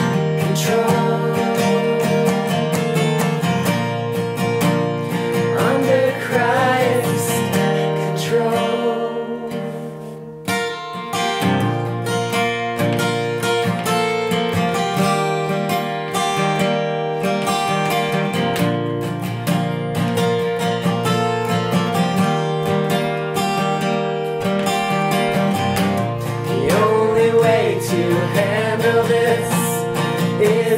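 Acoustic guitar strummed steadily through an instrumental stretch of a song, dipping briefly about ten seconds in; singing voices come back in near the end.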